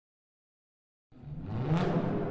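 Silence, then about a second in, a car-engine rev sound effect starts abruptly and climbs in pitch. It peaks sharply just before the end and serves as the opening of a logo sting.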